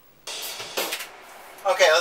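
Drum kit played live: a hit with ringing cymbal wash about a quarter second in, then a second sharp drum and cymbal hit just under a second in. A man's voice starts speaking near the end.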